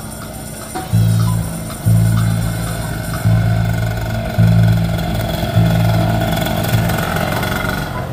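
Live band playing through PA loudspeakers: loud bass notes about once a second with drums, and a long held note above them in the second half.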